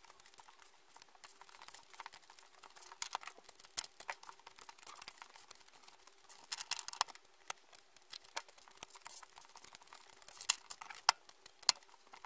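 Small tarot cards being dealt and laid out in rows on a table: irregular soft taps and clicks of card on card and tabletop, coming in clusters, with two sharper clicks near the end.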